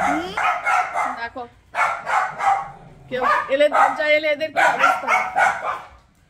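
A woman talking, with a small dog vocalizing.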